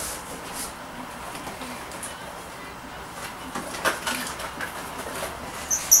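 A cardboard shipping carton and its paper packing being handled: scattered soft rustles and light knocks, with a brief high squeak near the end.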